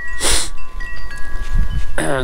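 Wind chimes ringing, several steady tones of different pitch sounding and overlapping as new strikes come in, over a low wind rumble on the microphone. A brief rushing sound comes just after the start.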